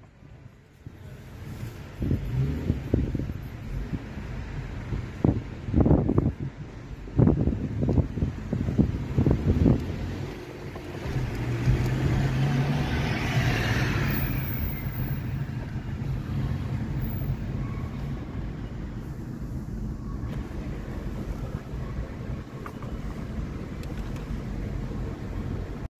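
Road and engine noise heard from inside a moving car. In the first half there is a run of irregular low thumps, then a steady low engine hum with a brief rising hiss in the middle.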